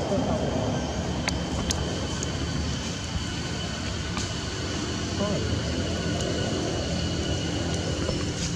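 Outdoor background ambience: a steady low rumble with indistinct distant voices, broken by two sharp clicks about a second and a half in.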